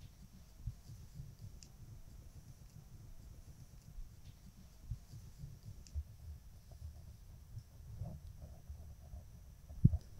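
Faint handling noise from a makeup brush and eyeshadow palette: soft scattered clicks over low, uneven thuds and rubbing picked up close on a clip-on microphone, with a slightly louder thud near the end.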